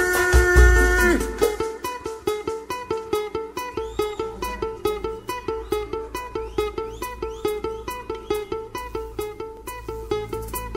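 Live pagodão band music. A held sung note over heavy bass ends about a second in, then a plucked string instrument plays a quick, evenly picked riff almost alone, with the bass and drums dropped low.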